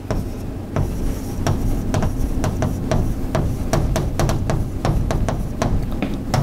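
Chalk writing on a blackboard: an irregular run of sharp taps and short scrapes, a few a second, as the chalk strikes and drags across the board.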